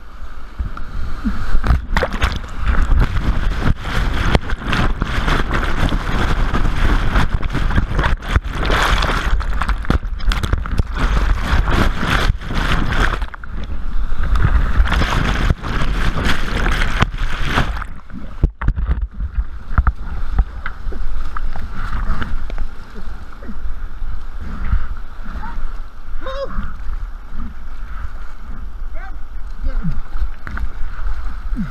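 Whitewater of a big rapid rushing and splashing close on a kayak-mounted camera, with heavy water hits on the camera through the first seventeen seconds or so as the kayak flips and goes under. After a brief drop, a steadier, quieter rush of the rapid continues.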